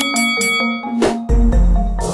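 Background music of short, repeating mallet-like notes, with a bright ringing ding at the start. About a second in, a rushing whoosh leads into a deep low boom that carries on to the end.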